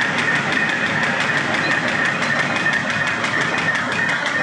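Paper bag making machine running at production speed: a steady mechanical clatter with a fast, regular beat of repeated strokes.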